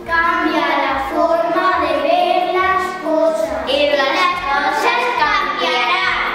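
Children singing a song together over backing music with a steady beat.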